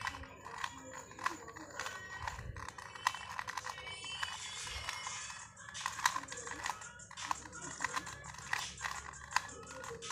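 A plastic 2x2 puzzle cube being turned quickly by hand: an irregular run of small clicks and rattles as the layers snap round. Faint music plays underneath.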